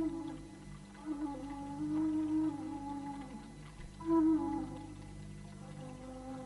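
Background music: a slow melody of long held, slightly gliding notes on a flute-like wind instrument.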